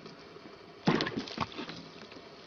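A cat's paw splashing in a plastic tub of water holding fish: a short burst of splashes about a second in.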